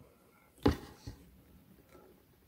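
Steel bolt of a 1950s Sheridan Silver Streak .20 multi-pump air rifle being opened and drawn back: one sharp click about two-thirds of a second in, then a fainter one shortly after.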